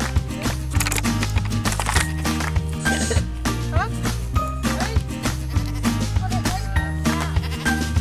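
Background music with a steady beat, with a goat bleating over it.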